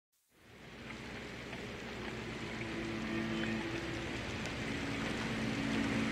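Logo-intro sound effect: a rushing noise swell that fades in and builds steadily louder, with a few held low tones under it.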